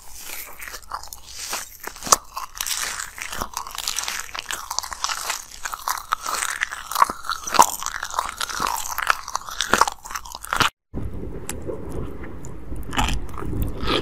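Close-up crunching and chewing of ice, a dense run of sharp, crisp crackles. A short break a little before the end, then the chewing goes on with a duller sound.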